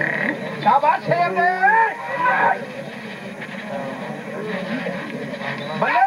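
Men's voices calling out loudly over a crowd, in drawn-out calls that rise and fall in pitch, in a burst between about one and two and a half seconds in and again near the end, with a lower steady background of crowd noise between.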